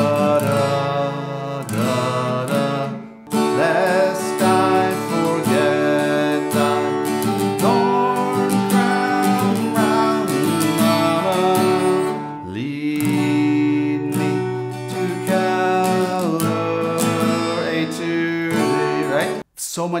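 Acoustic guitar strummed through a run of chord changes, among them Asus and D, with a brief break about three seconds in and another near the end.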